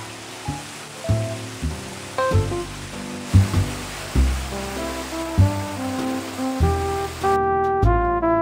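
Background music playing over the steady rush of splashing fountain water. The water sound cuts off suddenly about seven seconds in, leaving the music alone.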